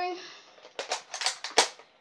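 A quick run of about six sharp clicks and knocks within one second, starting about three quarters of a second in, the last and loudest just before the end.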